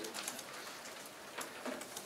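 Faint scattered clicks and rustles of papers and objects being handled on a table in a quiet room, with a slightly stronger knock about one and a half seconds in.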